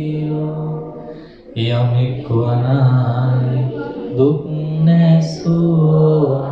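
A man chanting a Buddhist devotional chant in long, drawn-out held notes. After a brief breath about a second and a half in, the pitch steps down, then rises again about four seconds in.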